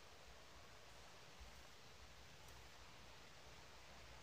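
Near silence: faint steady room hiss, with one or two barely audible light ticks.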